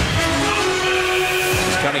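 A sustained horn-like tone, sounding as a held chord for about a second and a half, over the steady noise of an arena crowd.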